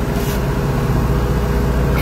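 Boat engine running with a steady low rumble and hum.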